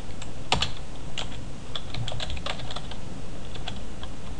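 Computer keyboard being typed on: a string of irregular, separate keystroke clicks as a word is entered, over a steady low background noise.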